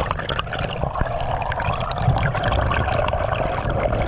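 Water rushing and bubbling past an underwater camera housing: a steady rushing noise with a low rumble underneath.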